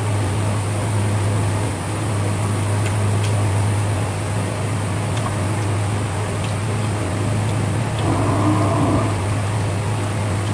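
A steady low mechanical hum with an even rushing noise, like a running motor or fan, with a few faint clicks over it and a short pitched sound about eight seconds in.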